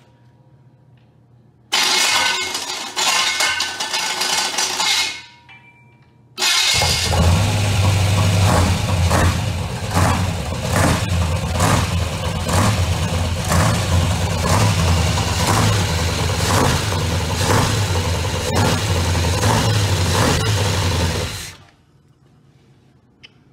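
A 350 Chevrolet small-block V8 on an engine stand, run without mufflers. It fires up for about three seconds and dies. It is then restarted and runs steadily for about fifteen seconds before cutting off suddenly near the end.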